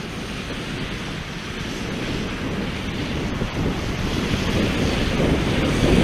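Wind buffeting an outdoor microphone: a steady rushing noise that starts abruptly and slowly grows louder.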